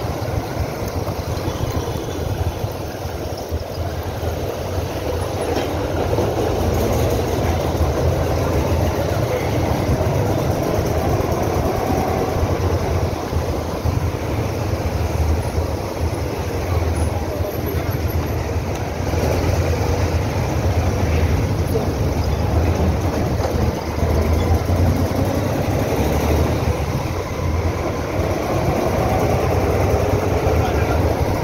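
Motorcycle engine running under way, heard from the bike itself, with steady road and wind noise and the sound of surrounding traffic; the engine pitch rises and falls a little with speed.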